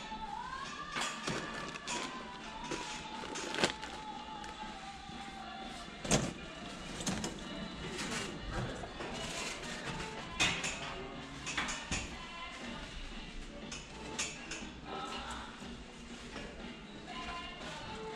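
Music with a singing voice over busy background noise, with scattered sharp knocks and clicks; the loudest knock comes about six seconds in.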